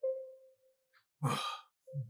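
A man's breathy, sighed "oh" of dismay about a second in. Before it, a single soft tone starts sharply and fades out within about half a second.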